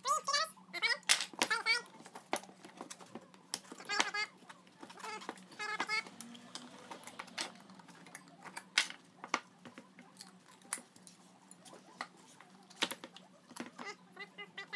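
Metal screwdrivers clicking and scraping against an electric scooter wheel as the old rubber tire is pried off the rim, in many short irregular clicks and knocks. Brief high voice-like sounds come and go between them.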